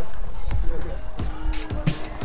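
A series of dull thumps, several a second apart, under voices and music.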